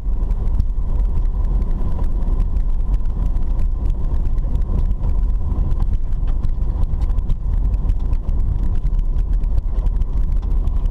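Car driving on an unpaved dirt road, heard from inside the cabin: a steady low rumble of engine and tyres, with frequent small ticks and rattles from the rough surface.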